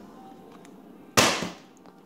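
A plastic water bottle landing on the floor with a single sharp smack about a second in, a bottle flip that fails to land upright.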